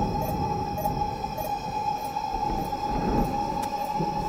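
Background film score: a sustained eerie drone tone held steadily, with faint high chirps repeating about every half second over a low rumble.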